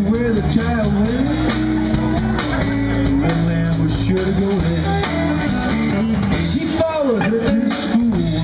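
Live blues band playing an instrumental passage between sung lines: electric guitar with pitch bends over bass and drums.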